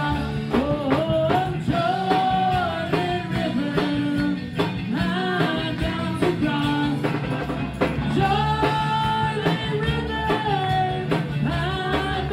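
Gospel singers, several women's voices, singing into microphones over live electric keyboard and band accompaniment with a steady beat.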